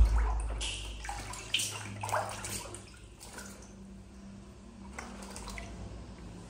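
Water splashing and sloshing in a plastic baby bathtub as a baby monkey paddles and moves about in it. Several splashes come in the first two or three seconds, then it settles to quieter sloshing and drips.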